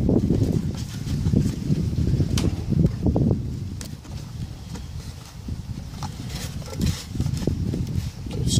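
Hands gripping and thumb-pushing on a plastic bottle's neck, a low irregular rubbing and handling noise with a few sharp clicks, as the soldering-iron weld along the cracked neck is put under force.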